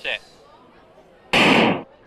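Starting gun firing once to send a hurdles field away: a single loud burst about half a second long, coming about a second and a half after the starter's "set".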